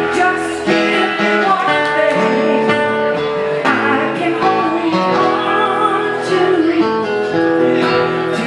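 Live acoustic band playing a country-folk song: a steel-string acoustic guitar played close by, over upright bass notes.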